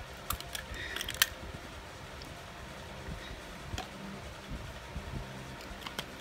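Faint clicks and taps of small plastic bottles being handled and a cap twisted off, several in the first second or so and a couple more later, over a steady low hum.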